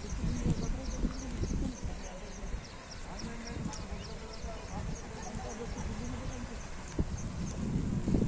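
Voices of people talking, loudest in the first second or so, over a steady low rumble. A short high chirp repeats about three times a second throughout.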